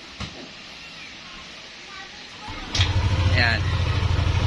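Yamaha Aerox scooter engine started as a test, catching a little under three seconds in and running at idle with a fast, even low pulse. Before it starts there is only low hiss and a light click.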